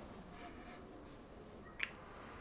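Faint room tone, then a single short, sharp click near the end.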